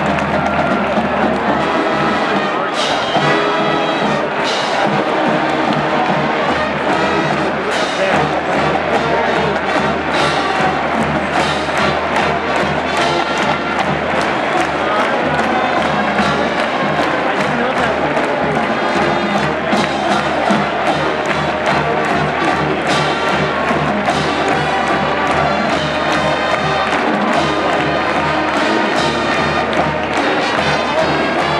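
Brass band music with steady drum strokes, played loud and without a break, with a stadium crowd cheering under it.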